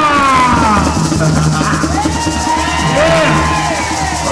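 Garifuna music: a man singing lead into a microphone over drums and shakers, the voice gliding through long held notes.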